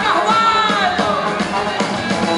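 Live band playing jovem guarda-style rock, with a melody line sliding downward in the first second.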